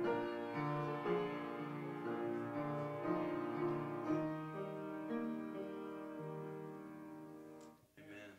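Slow piano music with long held chords, growing softer and ending just before the close.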